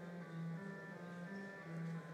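Church organ played softly in sustained chords over a slow-moving bass line, the notes changing about every half second.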